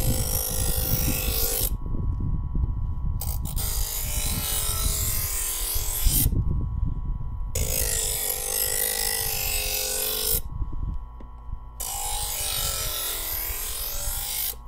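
Presto electric knife sharpener running with a steady motor hum while a dull stainless steel kitchen knife is drawn through its grinding slot. There are four grinding strokes of two to three seconds each, each a loud rasping hiss with short breaks between them, and the motor's tone sags as the blade bears on the wheels.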